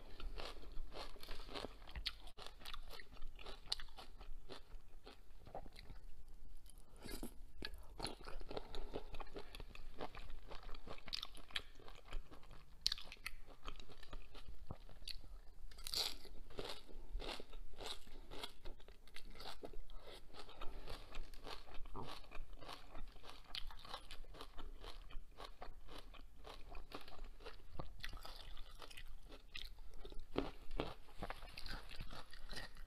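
Close-miked crunching and chewing of fresh cilantro sprigs eaten off a shrimp skewer: a steady run of small crisp crunches.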